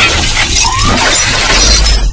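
Loud electronic intro sound effect for an animated logo sting: a dense wash of noise across the whole range over deep bass, with a brief rising tone under a second in.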